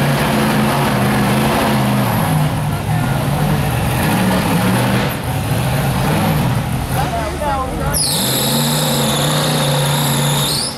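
Rock bouncer buggy's engine revving hard in repeated bursts as it claws up a rocky hill, the pitch rising and falling. About eight seconds in, a high shrill whistle-like tone starts and holds.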